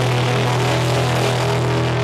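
Melodic punk band playing live: distorted electric guitars, bass and drums in a loud, dense, unbroken wash with a strong steady low drone.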